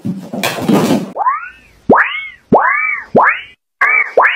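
Cartoon boing sound effects: a noisy burst in the first second, then four springy boings about two-thirds of a second apart, each sliding up in pitch and back down.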